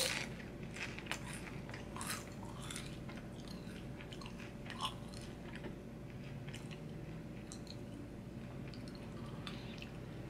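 A person chewing a mouthful of barbecue potato chip topped with a red sour gummy candy: soft, scattered crunches, the sharpest right as the bite is taken.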